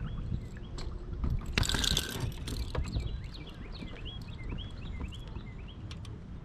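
A hooked bass splashing at the water's surface beside a kayak as it is fought to the boat, the splash loudest about a second and a half in. After it comes a run of short, faint high chirps, about three a second.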